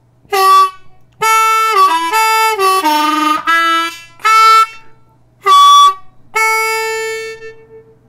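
Ten-hole diatonic harmonica in D played slowly: a blues phrase of draw notes on holes 1 and 2. The 2 draw is bent down a whole step, with short separate notes, a longer slurred run stepping down in pitch in the middle, and a held note near the end.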